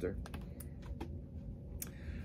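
Handling of CD cases: a few light clicks and taps over a low steady hum.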